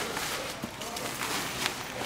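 Rustling and swishing of a pop-up beach shelter's fabric being bunched and gathered by hand as the shelter is collapsed, with scattered light knocks.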